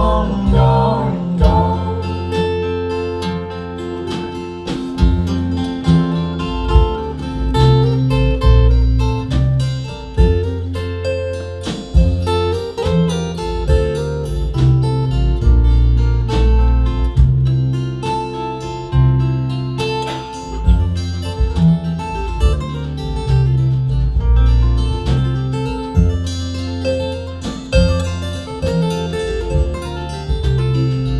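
Live acoustic folk band playing an instrumental break: acoustic guitars strummed and picked over an upright double bass walking through deep notes, with drums keeping the beat.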